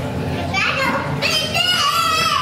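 Children's voices in a large room, with a child calling out in a high, gliding voice through the second half, over a steady low hum.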